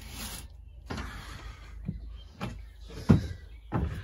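A glass window pane being slid along its plastic runner by hand: short rubbing slides broken by several knocks, the sharpest a little past three seconds in.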